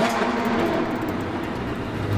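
Car speeding-past sound effect: a steady rushing noise of engine and wind that starts suddenly.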